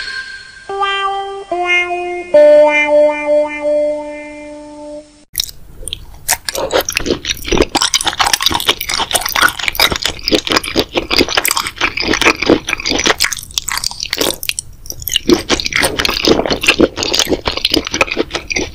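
A short musical sting of three stepped notes, each lower than the last, the last one held until about five seconds in. Then close-up chewing as a person eats noodles, a dense run of small clicks.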